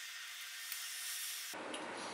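Faint steady hiss with no low end, cutting off suddenly about a second and a half in, then quiet room tone.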